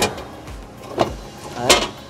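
Three short, sharp knocks about a second apart, the last one together with a short spoken word near the end.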